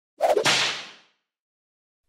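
Whoosh transition sound effect: a single quick swish that starts sharply a fraction of a second in and fades away within about a second.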